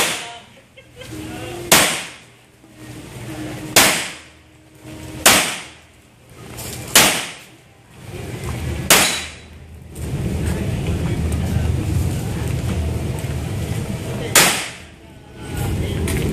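Pistol shots fired one at a time, about two seconds apart: five shots in the first nine seconds, then a pause and one more about fourteen seconds in. A steady low rumble fills the pause before the last shot.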